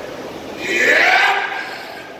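A man's loud, strained cry of effort, lasting about a second and rising then falling in pitch, as he lifts a loaded barbell off a squat rack.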